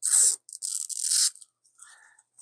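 Clear protective plastic film being peeled off a power bank's glossy face, crackling in two bursts, the second one longer.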